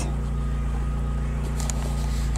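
A car engine idling steadily, a low even hum with a faint thin whine above it.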